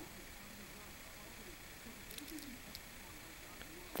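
Quiet room tone with a few faint clicks a little over two seconds in, from a small die-cast toy car being handled in the fingers.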